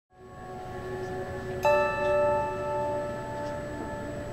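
Instrumental accompaniment opening a song: soft, sustained bell-like chords fading in. A new chord is struck about one and a half seconds in and held.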